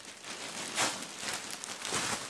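Clear plastic wrapping crinkling and rustling as gloved hands pull it open off a packaged dog bed, in several irregular crinkles.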